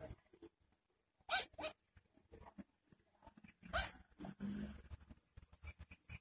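Short calls from a family of mute swans and cygnets: two close together just over a second in and another near four seconds. A low hum sets in about halfway.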